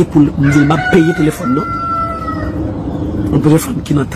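A rooster crowing once, a single long call of about two seconds, under a man talking.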